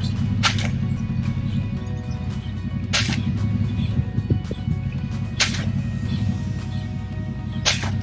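Four sharp paper slaps, about two and a half seconds apart, of axe kicks striking a hand-held target of folded newspaper circulars, over steady background music.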